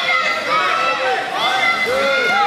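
Several raised voices calling out over one another, some high-pitched like children's, from spectators and coaches at the edge of a judo mat.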